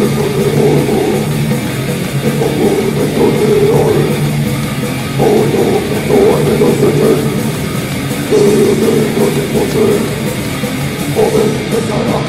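A grindcore band playing loud and fast in a live recording: distorted guitars, bass and drums in a dense wall of sound, surging in phrases every couple of seconds.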